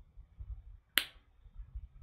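A single short, sharp click about a second in, over faint low room noise.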